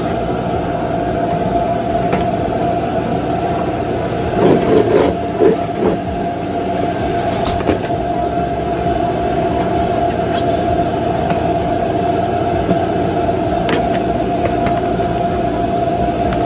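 Steady mechanical drone with a constant mid-pitched whine, from machinery running in a food trailer. A short burst of clattering comes about four and a half seconds in, with a few sharp clicks later.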